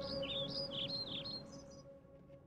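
Small birds chirping in quick repeated twittering calls over the fading tail of soft background music; the chirps stop just before the end.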